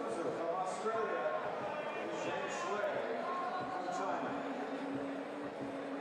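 Public-address announcer's voice over an arena sound system, introducing players; about four seconds in, a steady held note of music comes in.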